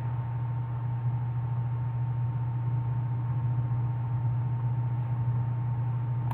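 A steady low hum with a faint thin tone above it and a soft hiss, unchanging throughout.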